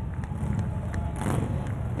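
Steady low rumble of outdoor city street noise, with the sound of a passing vehicle.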